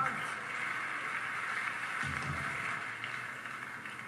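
Studio audience laughing and cheering as a crowd, heard through a television speaker.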